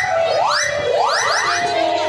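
Electronic sound effect of quick rising pitch sweeps, about five in a row: each climbs steeply and levels off into a held high tone. The last few overlap, and a steadier held tone follows near the end.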